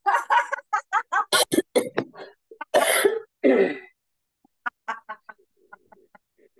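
A woman laughing out loud on purpose in a laughter-yoga exercise, taken on a deep breath in. It comes as a run of quick, forceful "ha" bursts and then dies away after about four seconds into fainter short laughs.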